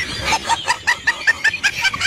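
Clucking like a hen's: a quick run of short, pitched clucks, about five or six a second.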